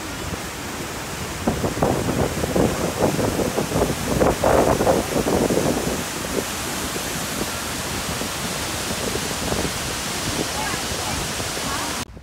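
Fast-flowing river water rushing and churning, a steady noise with a louder, choppier stretch in the first half.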